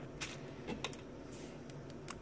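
A few faint, short clicks and taps of handling at the counter, with a low steady background.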